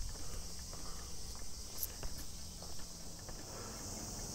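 A steady, high-pitched chorus of summer insects in the trees, with faint footsteps on a paved path.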